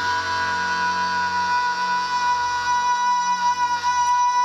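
Live blues-rock band holding one long sustained chord, with the electric guitar ringing out as a steady tone.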